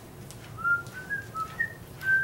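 A person whistling a short run of about five brief notes that step up and down in pitch, starting about half a second in.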